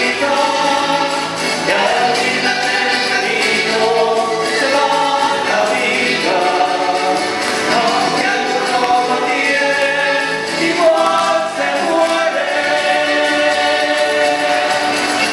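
Chilean cueca music: a sung cueca with instrumental accompaniment, playing steadily for the dancers.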